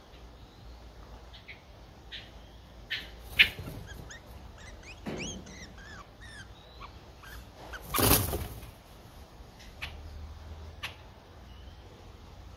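Streak-eared bulbul nestlings, four days old, giving a quick run of thin, falling begging chirps as an adult feeds them at the nest. A few sharp clicks come before, and about eight seconds in there is a loud rustle as the adult leaves the nest.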